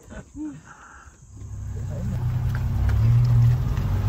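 Safari vehicle's engine running with a low steady hum that swells in after about a second and grows louder. There is a brief voice sound near the start.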